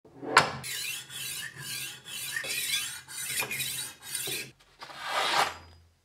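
A sharp click, then about four rasping passes as the diamond-coated disc of a Horl 2 rolling knife sharpener grinds along a steel knife edge. Near the end there is a softer swish of the blade slicing through paper.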